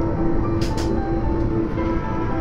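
Background music over the steady low rumble of an Airbus A330 airliner's cabin noise.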